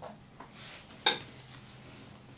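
A small metal palette knife clinks once, sharply, against something hard about a second in, ringing briefly; a couple of lighter knocks and a soft scrape come before it.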